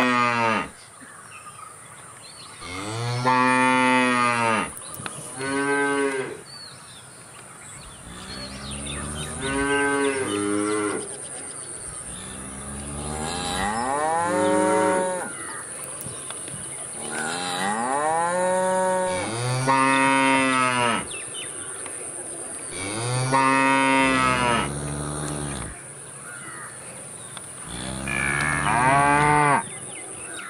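Cattle mooing again and again: about ten long moos, a few seconds apart, each rising and then falling in pitch.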